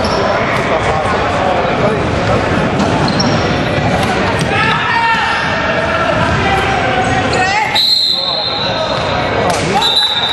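Basketball game play on a hardwood gym floor: the ball bouncing and players' voices echoing in the hall. Late in the stretch a long, steady, high whistle-like tone sounds.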